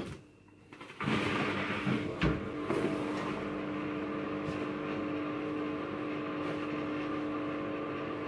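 Front-loading washing machine starting a wash: a click, then about a second in a steady hum over a hiss sets in and runs on, with one knock a little after two seconds.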